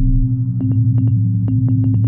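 Logo-sting sound effect: a steady low electrical hum with irregular sharp crackling clicks that come faster near the end, like a neon sign buzzing and flickering on.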